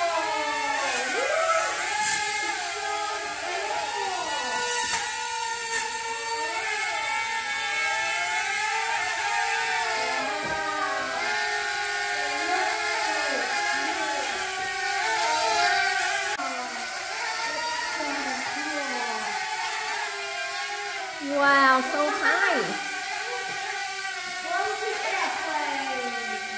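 Sharper Image Air Racer 77 toy quadcopter's small propeller motors whirring in flight, several pitches gliding up and down and crossing one another as the rotors speed up and slow down. The sound is briefly louder about three quarters of the way through.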